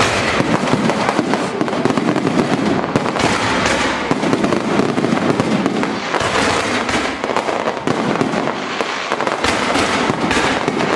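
Aerial fireworks display at full barrage: a dense, unbroken stream of overlapping shell bursts and crackling, with no pause.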